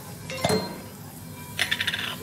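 A sharp metallic click about half a second in, then a quick run of light metallic clinks near the end.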